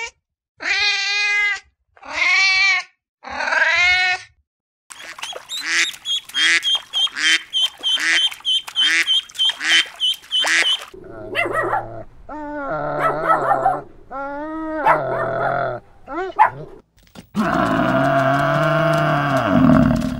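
A domestic cat meowing three times. Then ducklings peeping in a steady run of short high calls, about two a second, with further calls from the duck family. Near the end comes one long low call from a water buffalo.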